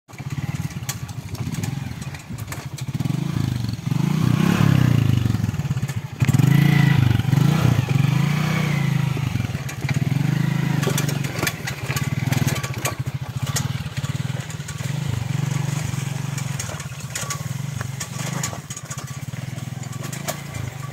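Small motorcycle engine running under load, revving up and down again and again as it is ridden slowly through deep mud ruts. It is loudest between about four and nine seconds in.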